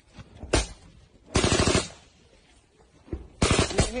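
Automatic gunfire at close range: a single sharp shot about half a second in, then a short rapid burst about a second and a half in, and another burst of several shots near the end.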